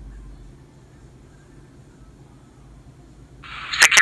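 Quiet room tone with a low hum, then, about three and a half seconds in, the Raspberry Pi tricorder's small built-in speaker starts playing its computer sounds, thin and tinny, with sharp clicks.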